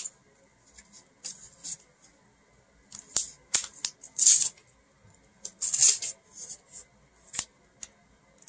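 A white plastic mailer being cut and pulled open by hand: a run of short crinkling rustles and snips. The loudest come a little past four seconds and near six seconds in.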